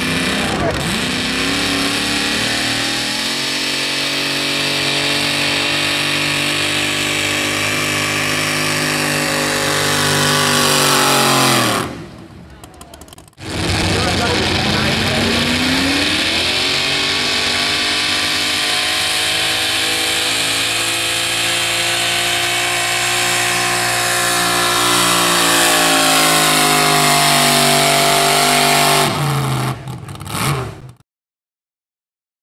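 Two modified two-wheel-drive pulling pickups, one after the other, each running at high revs under full load while dragging a weight-transfer sled. Each engine note climbs at the launch, holds steady through the pull, then falls as the pull ends. There is a brief break about twelve seconds in, between the two trucks.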